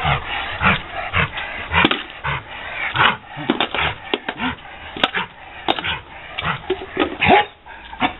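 A dog barking in quick short bursts, over and over, excited play barking at a ball held out to it.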